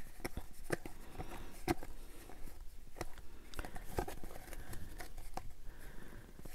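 Baseball trading cards being flipped through by hand: stiff card stock sliding and snapping against the stack in a run of quiet, irregular clicks.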